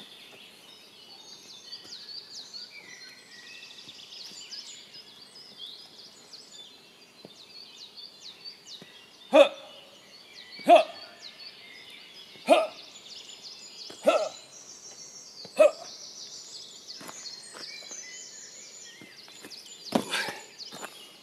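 Forest birds chirping and singing throughout. Starting about nine seconds in, five short, loud vocal shouts come about one and a half seconds apart: a man's martial-arts kiai shouts given with his strikes.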